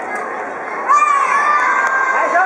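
Children shouting and cheering over a steady hubbub of voices, with a louder burst of long drawn-out calls starting about a second in.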